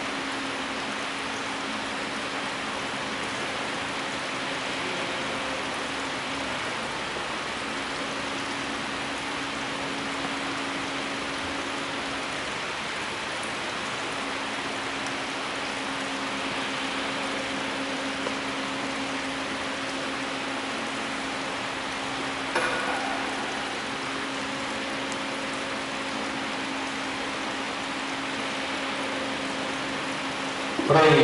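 A steady, even hiss with a faint low hum running under it, and a single short knock about two-thirds of the way through.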